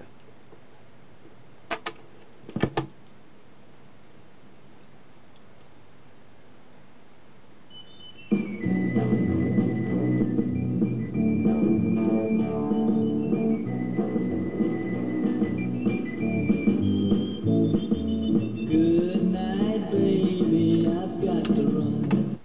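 Fidelity HF24 record player's auto-changer cycling, with a few sharp mechanism clicks early on, then about eight seconds in a 7-inch single starts playing loudly through the player's own built-in speaker.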